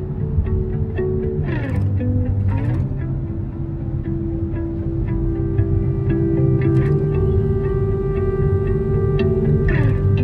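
Background music: an instrumental stretch of a guitar-and-bass track with steady held notes and a couple of swooping dip-and-rise sweeps, one about two seconds in and one near the end.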